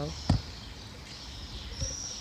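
A single sharp knock, then low outdoor background noise with a faint, thin, high-pitched sound near the end.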